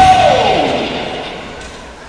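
A comic musical sound effect: one loud note that slides steadily down in pitch over about half a second, then fades away.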